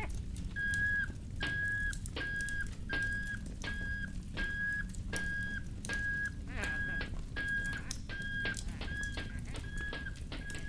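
Cartoon steam-whistle sound effect from a kettle, tooting one steady note about twice a second, each toot dipping slightly in pitch as it ends. Light clicks fall between the toots, over the low hum and hiss of an old film soundtrack.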